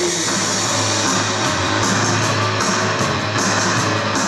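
Live goth/post-punk band playing: electric guitar and bass guitar over a steady beat.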